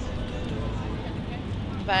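Steady low background noise of an open outdoor lot, with faint music held under it. A voice starts at the very end.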